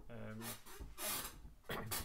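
A man's speaking voice, with a short burst of noise about a second in.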